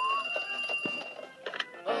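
Cartoon desk telephone ringing for about a second, then a couple of clicks as the handset is picked up.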